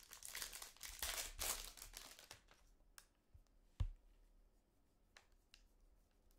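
Foil wrapper of a trading card pack crinkling and tearing as it is opened, for about two seconds. Then quieter handling of the cards, with a few light clicks and one thump, the loudest moment, near the middle.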